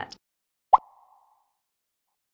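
A single short, mid-pitched pop used as an editing transition sound effect, with a brief tail that rings for about half a second.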